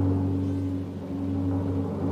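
Dramatic suspense sound effect for a winner reveal: a deep boom with a low sustained tone that rings on and slowly fades.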